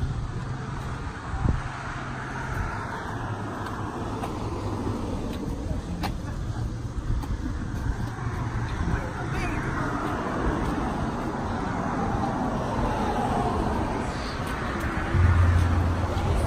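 Cars passing on the bridge roadway: a steady wash of road traffic, with vehicles swelling and fading as they go by. A louder low rumble comes in near the end.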